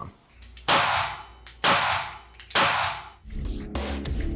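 Three loud, sharp sound-effect hits about a second apart, each ringing out for more than half a second, as an outro sting. Near the end a music bed with a low, steady beat comes in.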